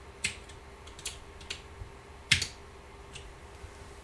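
Keys being typed on a computer keyboard: about six separate, irregularly spaced clicks, the loudest a little past two seconds in.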